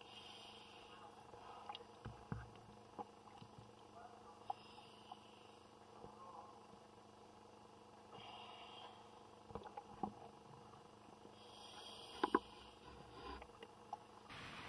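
Scuba diver breathing through a regulator underwater, faint, with a hissing, bubbling exhalation about every three to four seconds. Scattered small clicks and knocks of diving gear.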